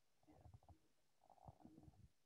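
Near silence: room tone, with a few very faint short low thumps.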